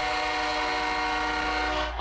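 A horn sounding a steady chord of several tones, held for about two seconds and cut off suddenly at the end.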